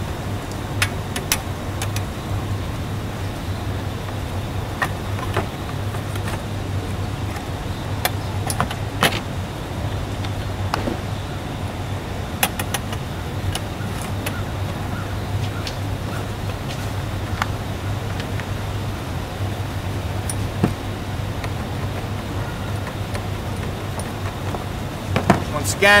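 Scattered light metallic clicks and taps as metal bimini top bows and their jaw-slide fittings are handled and fitted together, over a steady low hum.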